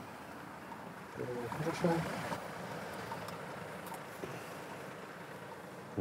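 Faint, steady road-traffic noise, with a man briefly saying "ja" about a second and a half in.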